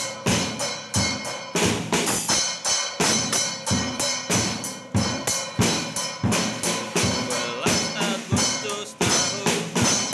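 Child-sized drum kit played with sticks along to a backing track: a steady run of drum and cymbal strikes, about three or four a second, over recorded music.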